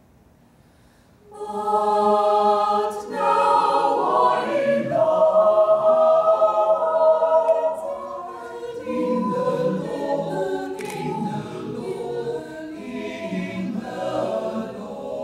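Mixed choir of women's and men's voices singing in chords, coming in after a short pause about a second in. A long chord is held in the middle, and the singing turns softer after that.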